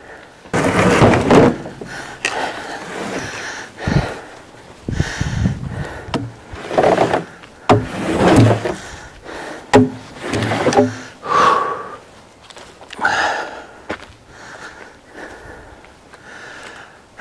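A heavy log being heaved and slid onto a pickup truck's tailgate by hand: scraping of wood on the truck bed, dull thumps and several sharp knocks.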